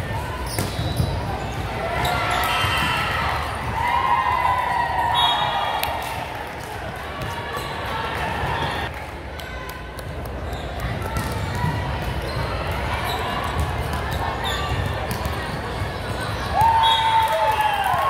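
Indoor volleyball game in a large gym: voices calling out and chattering, with the thuds of the volleyball being hit and bouncing on the hardwood court. A loud held call rings out near the end.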